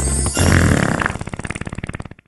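Cartoon fart sound effect: a long rattling run of rapid pops that slows, fades and stops. Background Christmas music ends as it begins.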